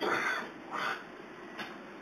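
A bird calling twice outdoors: two short, rough calls about three-quarters of a second apart, the first a little longer.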